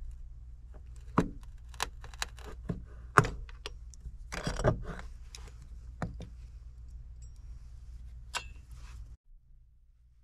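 Metal hand tools, pliers and a cordless drill fitted with a hole saw, clinking and clattering as they are picked up and set down on the wooden top plate: irregular sharp clicks and clanks over a steady low hum. Everything cuts off abruptly about nine seconds in.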